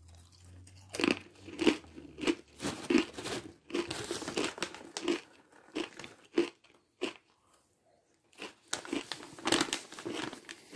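Someone chewing a mouthful of crunchy snack mix (pretzels, nuts and cereal pieces) close to the microphone: a steady run of crisp crunches starting about a second in. After a short lull near the end come more crunches and the crinkle of a foil snack pouch being handled.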